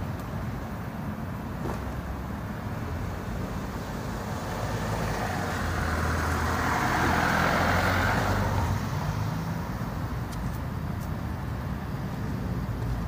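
Road traffic: a low steady engine hum, with a vehicle passing that swells and fades about halfway through.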